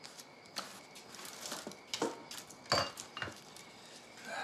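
A few separate clinks and knocks of dishes and food containers being taken out of a wicker basket and set on a table, with light rustling between them.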